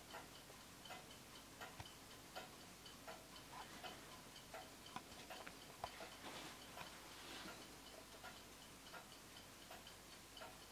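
Faint, steady ticking of a Winterhalder & Hofmeier drop-dial regulator wall clock's deadbeat escapement, about three ticks a second, as the pendulum swings.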